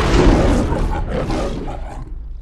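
A lion's roar sound effect, loudest at the start and fading away over about two seconds.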